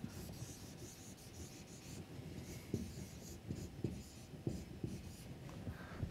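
Felt-tip marker writing on a whiteboard: faint rubbing strokes and short taps of the tip, more of them in the second half.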